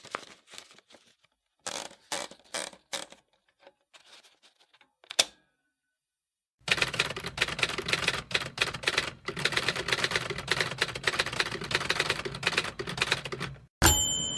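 Typewriter keys clacking: a few scattered keystrokes, a short pause, then fast continuous typing over a low hum. It ends with a single bright bell ding near the end.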